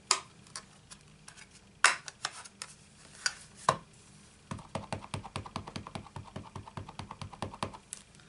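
A clear acrylic stamp block tapped rapidly on a plastic-cased ink pad to ink the stamp: a quick, even run of light taps, about nine a second, for a little over three seconds in the second half. Three single sharp clicks and knocks of the plastic come before it.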